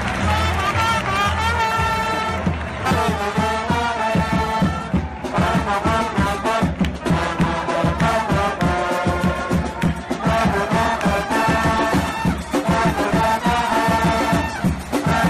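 Football supporters' brass band of trumpets, trombones and a sousaphone playing a melody in the stands. A steady bass-drum beat comes in about three seconds in.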